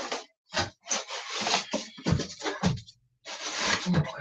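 Cardboard box scraping and rubbing in a run of irregular bursts as tightly packed contents are worked out of it by hand.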